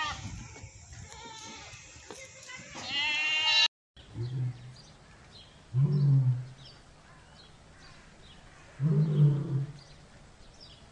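A goat bleats, one long wavering bleat that ends abruptly about three and a half seconds in. After a brief silence, a lioness gives three short deep calls a couple of seconds apart.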